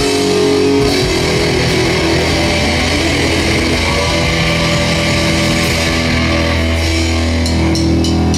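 Live rock band playing loud and steady: electric guitars, bass guitar and drum kit.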